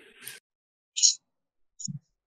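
Background noise from a participant's unmuted microphone on a video call cuts off abruptly just after the start, followed by a short high hiss about a second in and a brief click near the end.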